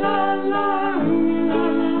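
Music: voices holding long, wordless notes over strummed accompaniment, changing to a lower note about a second in.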